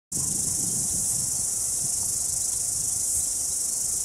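A dense, steady chorus of insects, high-pitched and unbroken, with a faint low rumble underneath.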